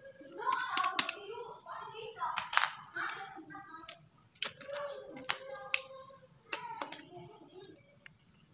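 Metal and plastic parts of a motorised sprayer's water pump clicking and knocking against each other as they are handled and fitted back together, a dozen or so sharp clicks at irregular intervals.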